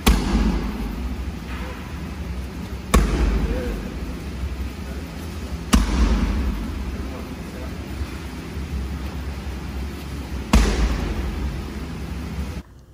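Four kicks landing on Muay Thai pads, each a sharp smack followed by room echo, a few seconds apart.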